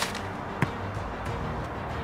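A football being struck, one short thud about half a second in, over faint background music.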